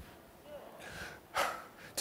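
A man's quick, sharp intake of breath about one and a half seconds in, close on a lapel microphone, against faint room noise, just before he speaks again.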